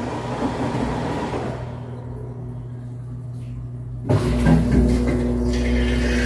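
Washing machine running off a small power inverter. The hum and the inverter's cooling-fan noise die away over the first couple of seconds as the drum stops, leaving a low hum. About four seconds in, the machine starts up again with a sudden low rumble and a steady hum.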